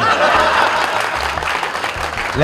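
Audience applauding, starting suddenly and holding steady.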